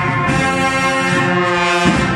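Bugle band (banda de cornetas y tambores) playing long, held brass chords. The chord changes about a quarter of a second in and again near the end.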